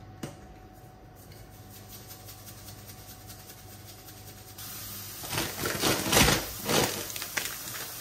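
Food sizzling in a frying pan, coming up about halfway through, with a spice jar shaken over the pan in several quick rattles.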